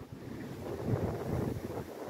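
Wind buffeting the microphone over the wash of sea waves.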